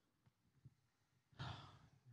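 Near silence, then about one and a half seconds in, a man takes one audible breath into a handheld microphone just before speaking.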